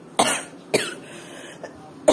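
A person coughing twice in quick succession, the first cough the longer.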